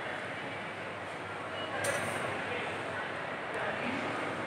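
Steady background noise of a large indoor shopping mall atrium, an even hall murmur with indistinct distant voices, and a brief tap about two seconds in.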